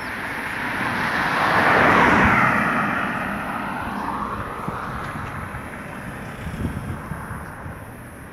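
A car passing close by on the road: tyre and engine noise builds to a peak about two seconds in, drops in pitch as it goes past, then fades, with a second, quieter vehicle going by near the end.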